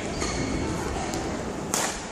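Badminton rackets striking the shuttlecock during a doubles rally in a large hall: a faint hit about a second in, then a sharp, loud crack of a hard shot near the end.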